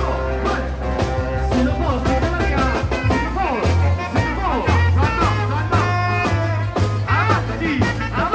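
Live band music with a steady beat and a heavy bass line.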